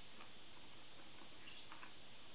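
Close-miked eating sounds: a few soft, scattered clicks as a sushi roll piece is handled with wooden chopsticks and eaten, over a steady background hiss.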